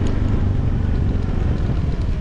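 Motorbike riding along a road: a steady engine and road rumble with wind buffeting the microphone.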